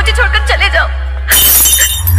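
A glass-shattering sound effect, a sudden crash of breaking glass about a second and a half in, following a short line of voice over music with a steady heavy bass.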